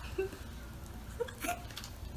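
A few faint, short stifled laughs, like small giggling catches of breath, over a quiet room.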